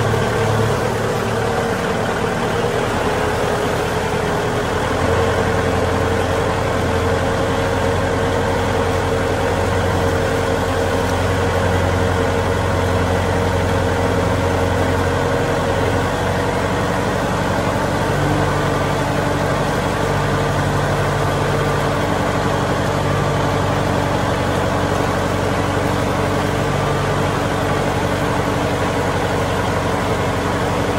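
Kubota M6040SU tractor's diesel engine running steadily under load as it pulls a disc harrow through a wet paddy field.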